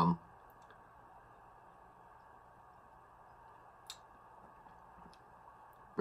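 Near silence: quiet room tone, with one faint brief click about four seconds in.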